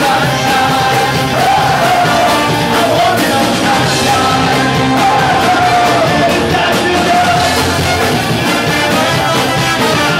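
Live band playing loud, upbeat music, a man singing lead with a trombone playing alongside.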